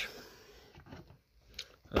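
A few faint, soft clicks and rustles from handling a cardboard action-figure box with a clear plastic window, in an otherwise quiet room.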